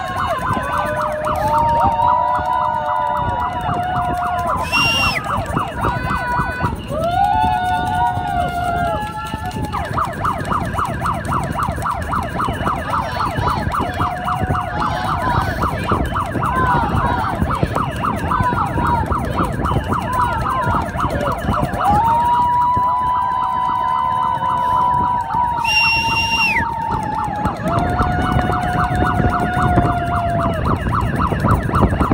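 Race-side noisemakers: plastic horns sounding long, steady notes that step up and down in pitch and overlap. A shrill pea whistle is blown in short blasts twice, about five seconds in and near the end. In the middle a fast, even chatter runs for about ten seconds.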